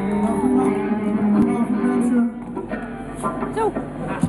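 Several electric guitars sounding sustained notes and chords through a stage PA, loud for about the first two seconds and then quieter.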